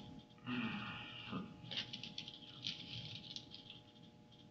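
Quiet room tone with a faint steady electrical hum, scattered light rustling and small clicks of paper being handled at a table, and a brief indistinct murmur about half a second in.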